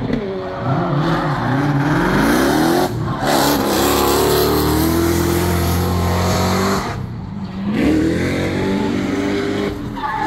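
Formula Drift cars drifting at full throttle: the engines rev up in rising sweeps, with several engine tones overlapping, over tyre noise. There are brief dips in level about three seconds in and again around seven seconds in.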